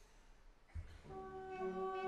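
After a quiet pause, a low thump comes about three-quarters of a second in. An orchestra then enters with a held chord, the horns most prominent, growing louder.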